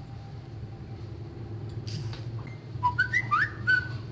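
A quick run of about five short, high whistled chirps that glide up and down in pitch, near the end, over a low steady hum.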